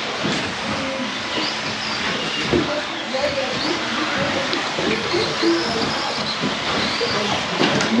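Several 1/10 2WD electric RC buggies racing on an indoor carpet track: the whine of their 17.5-turn brushless motors repeatedly rising and falling in pitch as they accelerate and brake, over a steady rushing noise of the cars and the hall.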